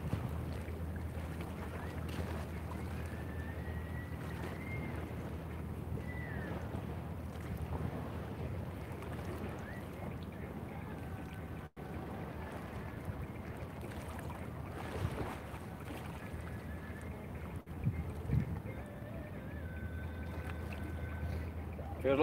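A boat engine running steadily across the harbour, a low even drone, with light wind on the microphone. A few faint high gliding calls come in the first seconds.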